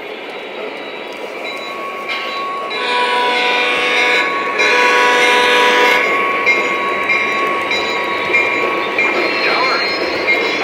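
Model Lionel GP35 diesel locomotive's sound system blowing its horn, a chord lasting about three seconds that starts about three seconds in, over the steady rumble of the model freight train rolling past on three-rail track.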